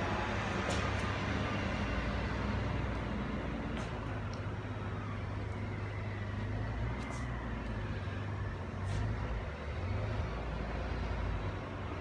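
Stick of chalk drawn across a concrete floor, a faint scratching over a steady low background rumble, with a few light ticks.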